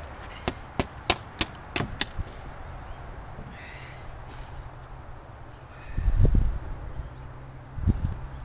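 Back of a hive tool lightly rapping a flexible propolis trap over a tub, knocking the propolis loose: about six sharp knocks, roughly three a second, in the first two seconds. A low thump about six seconds in.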